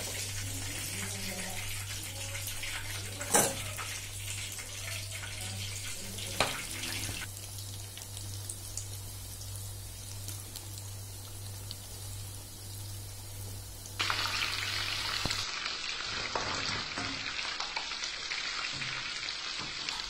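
Chicken pieces deep-frying in hot oil in an iron kadai, giving a steady sizzle, with a low hum under it for most of the time. There are two sharp knocks a few seconds in, and the sound changes abruptly at cuts.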